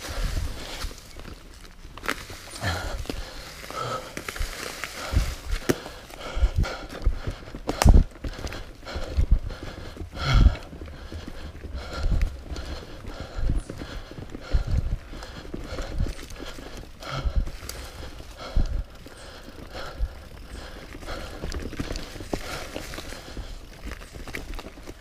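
Mountain bike ridden fast down a rough dirt-and-leaf trail: tyres rolling over the ground with irregular knocks and rattles as the bike hits rocks and roots. The two heaviest jolts come about a third of the way in and near the middle.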